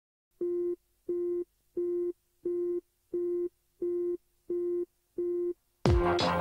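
Telephone busy-signal tone beeping eight times at an even pace, about one and a half beeps a second, sampled into the opening of an electronic pop track. The electronic beat with heavy bass slams in just before the end.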